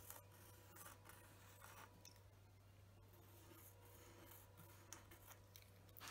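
Near silence: faint scratching of a pencil drawing short strokes on a painted wooden cutout, over a low steady hum.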